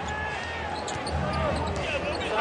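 Live basketball arena sound: crowd noise with the ball bouncing on the hardwood court as a player dribbles on a drive to the basket.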